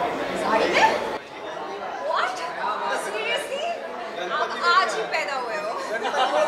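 Chatter of several voices talking over one another, with no clear words. A low background rumble drops away about a second in.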